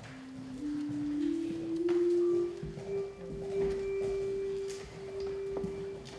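Handbell choir playing a slow rising line of single ringing notes, each a step higher than the last, settling on one long held note about three seconds in.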